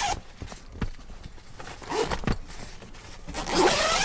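Zipper on the nylon window of a Pontiac Aztek factory tent being pulled open, with tent fabric rustling. Short scattered rasps come first, then a longer, louder zip near the end.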